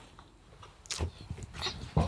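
Bedclothes and duvet rustling as a person turns over and lies down in bed: a few soft rustles about a second in and again near the end.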